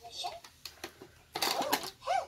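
Plastic drawer of a toy cash register being pushed shut, a short rattling clatter about a second and a half in, with faint voices.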